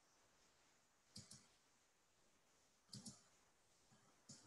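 Faint computer mouse clicks over near-silent room tone: two quick pairs of clicks, about a second in and again about three seconds in.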